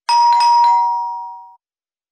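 Two-tone ding-dong doorbell chime: a higher note, then a lower note about half a second later, both ringing on and fading out after about a second and a half.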